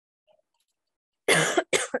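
A woman coughing twice in quick succession, about a second and a quarter in.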